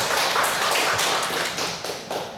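Audience applauding, a dense patter of hand claps that thins out near the end.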